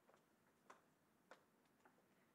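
Near silence: faint room tone in a meeting room, with four faint clicks about half a second apart.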